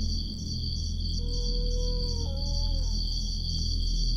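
Suspenseful ambient background music: a steady low drone under a regular high-pitched ticking pulse, with a faint held note stepping down in pitch midway.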